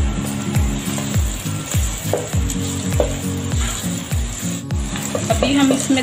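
Carrot and green bell pepper strips sizzling as they are stir-fried in hot oil in a wok. Background music with a steady low drum beat, a little under two beats a second, plays over the sizzle.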